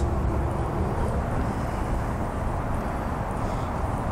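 Steady low background noise inside a car's cabin, with no distinct events.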